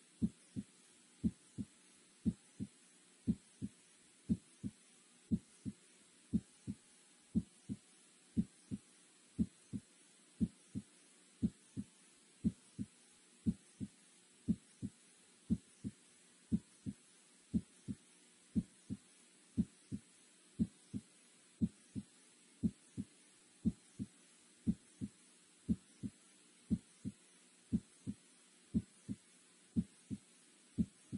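Short, low electronic blips repeating quickly and evenly, several a second and some louder than others, over a faint steady hum: the ticking soundtrack of an animated timeline of nuclear test explosions, where each tick marks a passing month.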